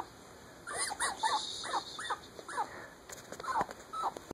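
Fennec fox giving a string of short, high whimpering calls, about seven in quick succession, then two more near the end.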